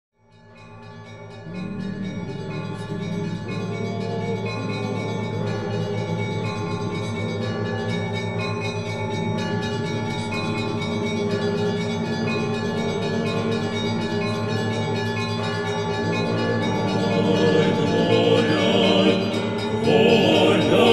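Orthodox church bells ringing as an opening theme, many overlapping bell tones struck in a steady pattern. It fades in from silence at the start and swells near the end.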